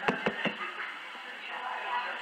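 A microphone being tapped, three quick knocks in the first half second, typical of checking whether it is on. After that only faint room noise comes through it.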